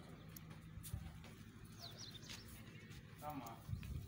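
Faint outdoor ambience: a bird gives a few quick descending chirps about halfway through, and a man's voice is heard faintly a little past three seconds in. There are two low thumps, about a second in and near the end.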